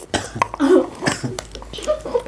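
A person coughing a few short times while eating very spicy noodles, with light clicks of utensils on bowls.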